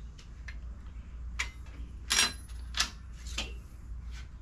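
Light metallic clinks and taps of aluminum grill frame pieces knocking against a perforated steel welding table as they are handled and set in place, about six over a few seconds. The loudest, a little after two seconds in, rings briefly. A steady low hum runs underneath.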